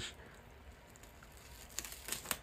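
Special-effects prosthetic nose piece being peeled off the skin: faint sticky tearing, with a few sharp crackles near the end as it comes away.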